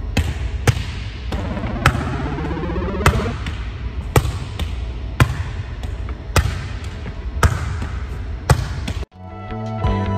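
A volleyball passed continuously against a gym wall: a sharp slap about once a second as the ball strikes the wall and the player's forearms. About nine seconds in, the slaps stop and music takes over.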